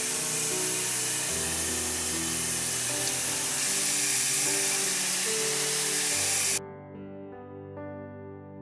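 A fine shower of water spraying down onto potting soil and viola leaves in a planter, cutting off suddenly about six and a half seconds in.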